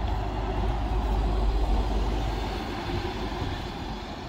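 Wright StreetDeck double-decker bus driving past, its diesel engine giving a deep rumble over tyre and road noise. The sound is loudest in the first half and fades as the bus pulls away.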